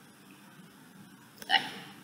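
Faint microphone hiss, then a woman's voice saying a single short, clipped 'okay' about one and a half seconds in.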